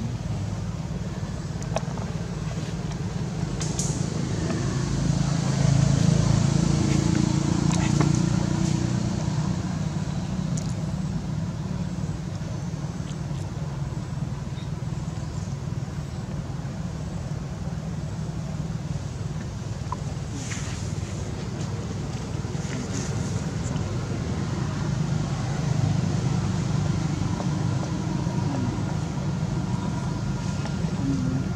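Low, steady rumble of a motor vehicle running, swelling about five to nine seconds in and again near the end, with a few faint clicks over it.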